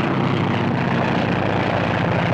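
Propeller biplane's engine running at full power in a steady drone as the plane takes off.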